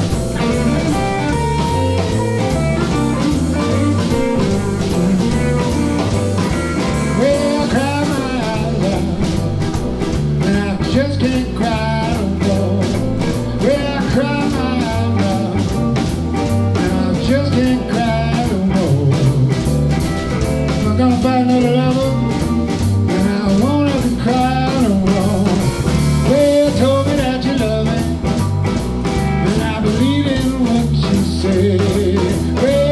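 Live blues band playing a shuffle in G: electric guitars, bass guitar, keyboard and drum kit, loud and steady, with a singer's voice over the band in the second half.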